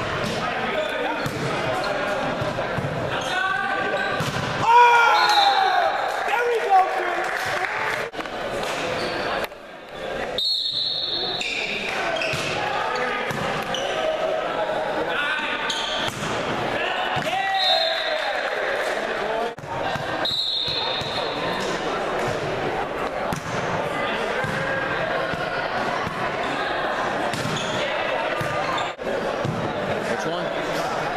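Indoor volleyball play in a reverberant gym: repeated sharp hits of the ball, brief high squeaks of sneakers on the hardwood court, and players and onlookers calling out, loudest about five seconds in.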